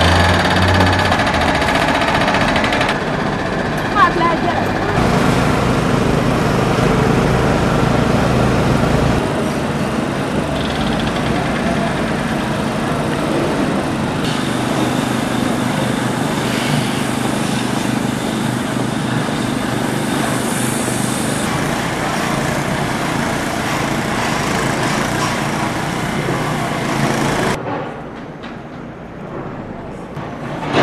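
Construction-site noise from track-laying work: machinery runs steadily, with voices mixed in. The sound changes abruptly a few times and drops away near the end.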